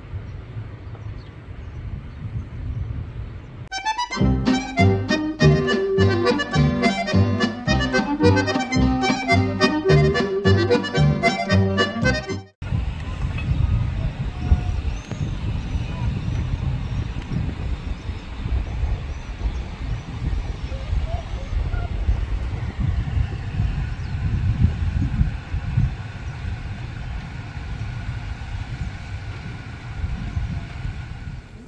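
Wind buffeting the microphone, broken by about eight seconds of instrumental music with a steady rhythm that starts about four seconds in and cuts off abruptly; wind noise then fills the rest.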